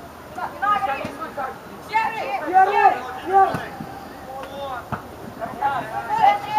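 Shouted calls from voices on the football pitch, coming in three short groups with pauses between them. The words are not clear.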